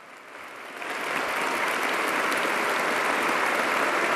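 A large audience applauding: the clapping swells in during the first second, then holds steady.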